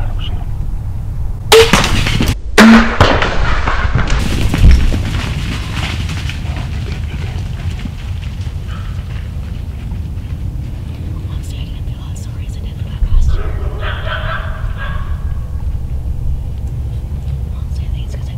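A bow shot at a whitetail buck: a sharp crack about a second and a half in, followed by two more loud bursts within the next three seconds.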